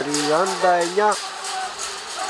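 A man's voice commentating in Greek, calling out a match minute; after about a second the voice stops, leaving only a faint background hiss.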